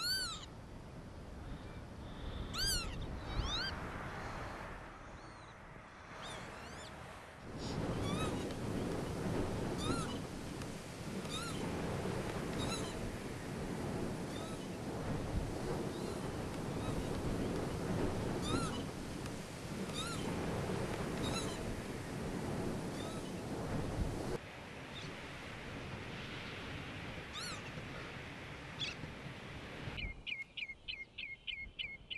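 Northern lapwings calling again and again: plaintive, mewing calls that rise and fall in pitch, one every second or two. Behind the calls a steady rushing noise runs through the middle stretch and cuts off suddenly.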